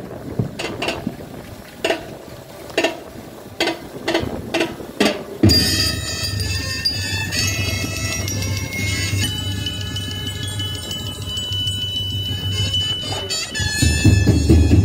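Opening music for a dance performance: a string of single struck, ringing chime-like notes, then about five seconds in a fuller piece comes in with held tones over a steady low drone.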